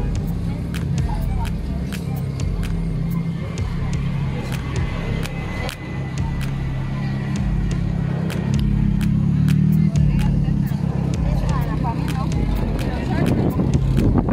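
Open-air street market ambience: background voices over a steady low rumble, with frequent sharp ticks. The rumble grows louder past the middle.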